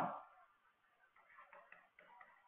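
The tail of a spoken word fading out, then near silence with faint, scattered light taps and scratches of a stylus on a pen tablet from about a second in.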